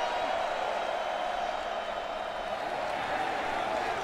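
Large stadium crowd making steady, even noise from the stands during a football play.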